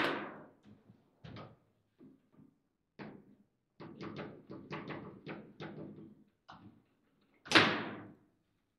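Table football play: the ball clacking against the plastic players and the table's walls, with a quick flurry of knocks in the middle. A loud bang comes right at the start and another about 7.5 seconds in.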